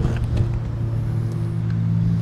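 Steady low engine hum, as of a vehicle idling, holding an even pitch. A few light clicks sound in the first half second.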